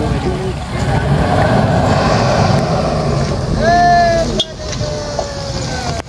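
Low rumble of bus engines under outdoor crowd noise, then, about three and a half seconds in, a loud drawn-out shout that sinks slowly in pitch and fades.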